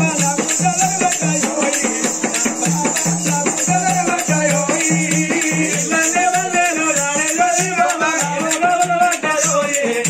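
Telangana oggu katha folk music: a voice sings a wavering, ornamented melody over a steadily repeating drum beat and a continuous high rattle from the hand drum and small cymbals.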